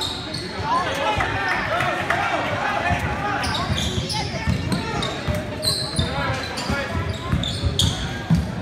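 A basketball being dribbled on a hardwood gym floor, the thumps coming thicker in the second half, with sneakers squeaking and spectators' voices talking and calling out, echoing in a large gym.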